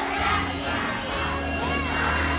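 Young children's choir shouting and singing together over backing music, with a short rising-and-falling tone near the end.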